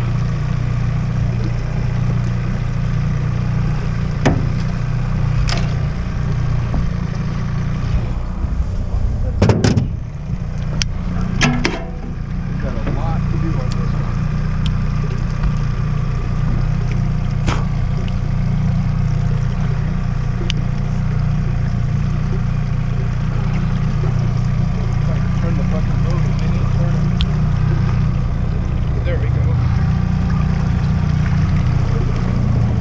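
Outboard motor on a small aluminium fishing boat running steadily under way, a constant low drone with water churning at the stern. A few short sharp clicks and knocks come through, mostly between about four and twelve seconds in.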